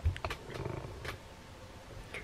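Camera handling noise: a few soft clicks and a short low rumble as the handheld camera is turned around.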